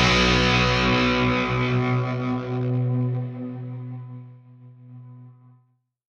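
Final overdriven electric-guitar chord ringing out and fading over about five seconds, then cut off suddenly.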